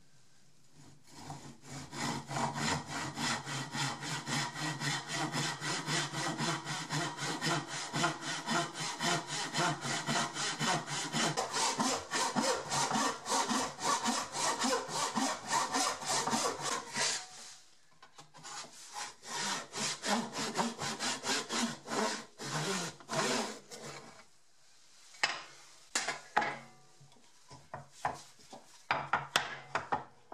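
Hand backsaw crosscutting a wooden bench stretcher at the tenon shoulder line, with rapid, even strokes for about fifteen seconds. After a brief pause the strokes come slower and further apart, then only a few scattered strokes as the cut finishes.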